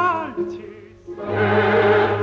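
Opera recording: a solo tenor voice ends a phrase with wide vibrato, then after a short dip a full chorus with orchestra comes in loudly, about a second in.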